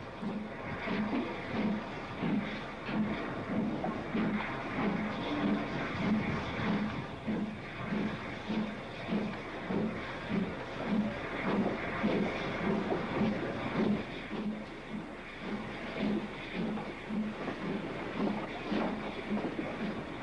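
Great Western steam locomotive hauling an express at work, heard from the footplate, with a steady rhythmic beat about twice a second over continuous running noise.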